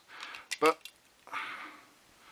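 A disassembled slot-car hand controller being handled, its plastic and metal parts giving a few light clicks and a soft rustle, between a man's spoken words.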